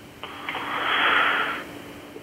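A person breathing out heavily into the microphone: a hiss that swells and fades over about a second and a half.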